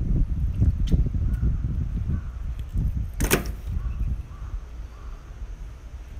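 Low rumbling handling noise and small knocks as bare hands work a raw fish close to the microphone, with one sharp crack about three seconds in.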